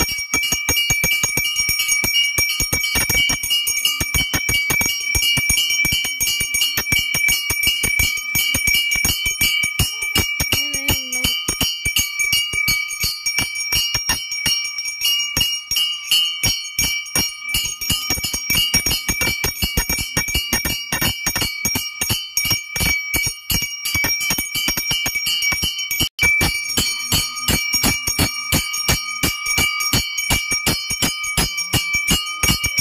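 Pooja bell rung rapidly and steadily through the aarti, about five or six strokes a second, its ring carrying on between strokes.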